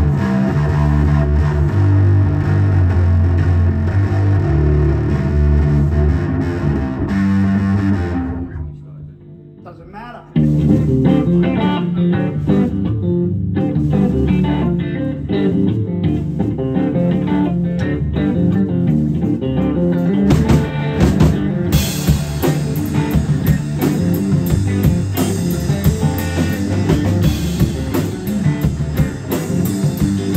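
A live blues-rock trio plays: electric guitar, electric bass and drum kit. The music drops almost away about eight seconds in, then cuts back in suddenly about two seconds later, with cymbals ringing out more brightly from about two-thirds of the way through.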